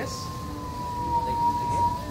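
Steady high whine from a road bike spinning on an indoor trainer, dipping slightly in pitch about a second in and settling back.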